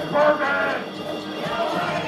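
Live electronic music from a tabletop electronics rig, with a wavering, voice-like pitched sound that carries no words, strongest in the first second.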